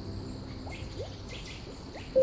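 Nature-sound bed between piano phrases: insects chirping in short high trills, with a few short rising plinks and a steady low water noise underneath.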